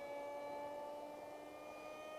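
Faint whine of a radio-controlled F-16XL's 2212 2700 Kv brushless motor spinning a 6x3 propeller in flight, its pitch rising slowly.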